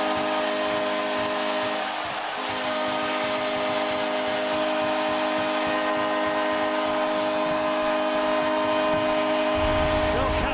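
Arena goal horn sounding in one long steady blast, with a brief dip about two seconds in, over a cheering crowd: the signal of a home-team goal.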